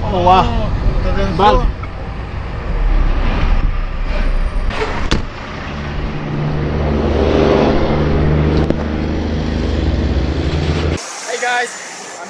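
Large road vehicle's engine running close by amid highway traffic: a steady low drone that grows louder from about six seconds in and cuts off abruptly about a second before the end. A voice speaks briefly at the start.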